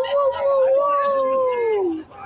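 A person's long, high 'ooooh' held on one pitch for about two seconds, then sliding down at the end.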